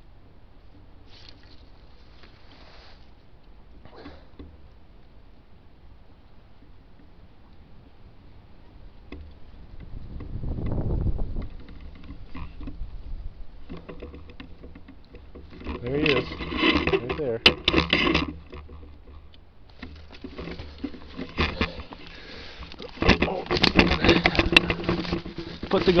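Handling and movement noise from a scope-mounted camera on a rifle carried through snowy brush: rustling, crackling and scraping of twigs and snow, with a low rumble about ten seconds in. In the second half, muffled talking joins the rustling.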